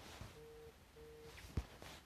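Phone alert tone: two short, steady beeps about a quarter second apart, followed by a soft click.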